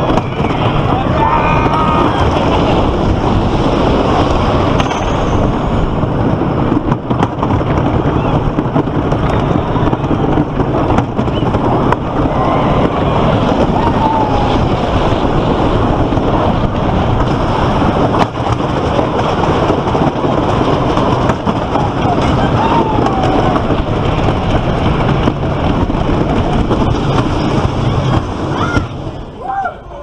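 Wooden roller coaster train running over its track, heard from on board: a loud continuous rumble and rattle with wind rushing over the microphone, and a few faint voices now and then. The noise falls away suddenly near the end as the train slows into the station.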